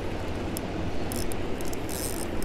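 A boat's motor running steadily with a low rumble under a hiss of water, with scattered short high clicks.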